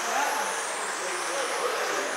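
1/10-scale electric RC sprint cars running laps on an indoor dirt oval: a steady noise of motors and tyres on dirt, with a high whine that rises and falls as the cars speed up and slow through the turns.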